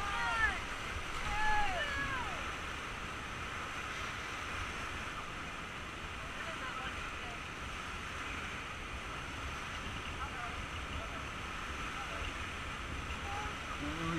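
Whitewater rapids rushing steadily around a raft, with wind buffeting the microphone; the river is running high and fast. A couple of faint shouts come in the first two seconds.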